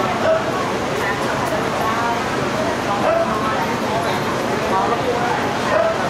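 Indistinct voices of many people talking at once, a continuous babble with no clear words.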